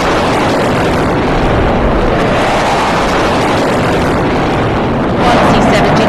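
Sukhoi Su-30MKI jet fighters flying past overhead in formation, a loud steady jet roar. About five seconds in, a man's commentary voice begins over the jet noise.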